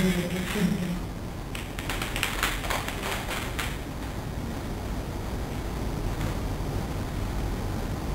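A run of light, irregular clicks and taps lasting about two seconds, then steady room hiss.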